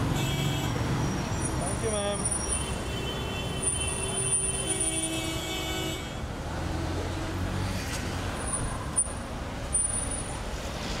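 Street traffic running steadily, with a vehicle horn held for about three seconds in the middle and shorter horn notes near the start.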